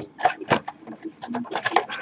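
Cardboard Topps Chrome card boxes being handled and set down in stacks on a table: an irregular run of quick taps, knocks and scrapes.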